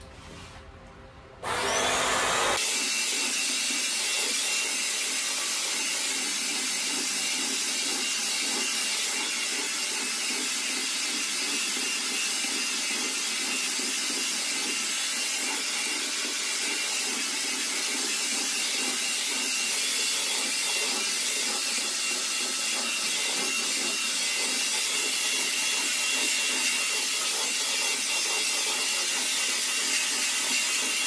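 A Bissell CrossWave wet-dry floor cleaner switched on about a second and a half in, then running steadily with a faint high whine as it is pushed over a vinyl floor.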